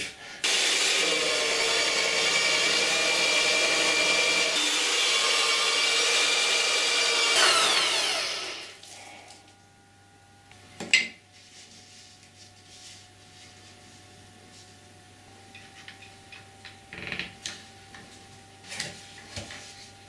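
Drill press boring into a wooden guitar body to hollow out weight-relief cavities, running loud and steady before the motor winds down in pitch about eight seconds in. A few light knocks of wood being handled follow.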